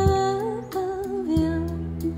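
Band music between sung lines: a held melody line with slight pitch bends over changing bass notes and a few light drum hits.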